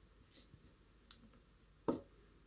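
Faint clicks and scratching: a short hiss early, a sharp click about a second in, and a louder click just before the end.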